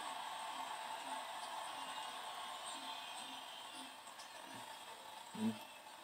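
Faint television broadcast of a basketball game playing at low volume: a steady arena crowd hubbub with faint commentary, and a man's short "mm" near the end.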